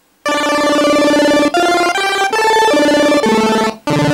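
Nord Stage 3 Compact synth playing a fast chiptune-style arpeggio: a bright, buzzy pulse-wave tone stepping rapidly up and down through octaves, legato-triggered so the steps run together. The root note changes several times; it starts about a quarter second in and breaks off briefly near the end.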